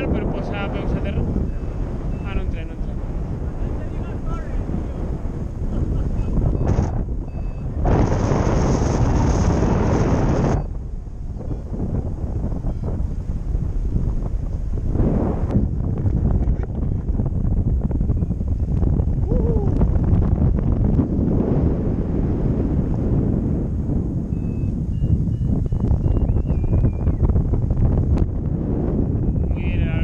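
Wind buffeting the microphone of a camera on a paraglider in flight: a steady low rumble, with a louder hissing gust from about 8 to 10 seconds in.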